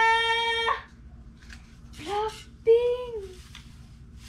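A girl's voice holds a long, level high note that ends under a second in. Two shorter sung calls follow about two and three seconds in, the last sliding down. Soft fabric rustling can be heard between them.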